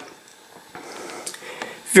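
Faint handling sounds of a cardboard playing-card box turned in the hand: a few soft taps and rustles in a quiet room.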